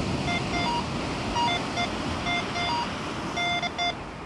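Minelab Go-Find 66 metal detector giving a run of short beeps in two pitches, a lower and a higher tone, as its coil sweeps over a line of coins set close together in a recovery speed test. The detector is struggling a little to separate the targets.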